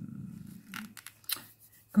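A woman's drawn-out hesitation sound fading away, followed by a few faint short clicks and a breath in a pause before she speaks again.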